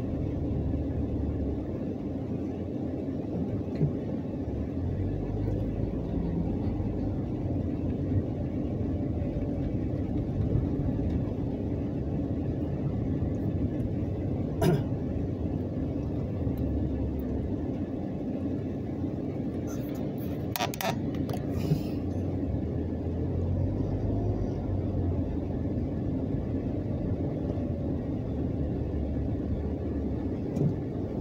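Steady low rumble of a car's engine and tyres heard from inside the cabin while driving slowly, with a few short sharp clicks and knocks about halfway through.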